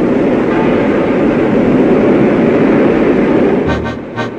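Steady, loud rushing of rough, surging sea water, ending near the end as music with a beat comes in.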